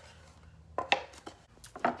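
A few short, light knocks and clatters of small wooden shadow-box frames being put down and picked up, about a second in and again near the end.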